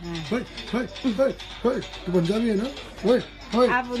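A voice chanting a rhythmic sing-song of short syllables, each rising and falling in pitch, about three or four a second.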